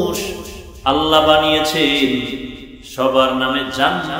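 A man preaching in a sung, chant-like delivery with long held notes: one phrase trails off at the start, a long sustained phrase begins about a second in, and another starts near three seconds.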